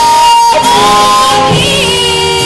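Live musical-theatre song: held sung notes over band accompaniment with guitar, stepping from one pitch to the next.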